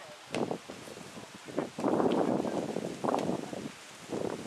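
Football kicked on a grass pitch: a few sharp knocks, with a louder rush of noise through the middle.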